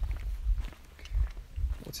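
Footsteps, heard as a few soft low thumps with a low rumble on the microphone.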